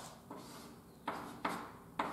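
Chalk on a blackboard: a few sharp taps and short scratching strokes as a formula is written, echoing a little in a small room, the strongest coming about a second in and at the end.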